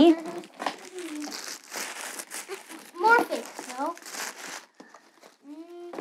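Paper wrapping crinkling and rustling in quick, uneven bursts as small ornaments are unwrapped and lifted out of their little boxes, dying away about three-quarters of the way through.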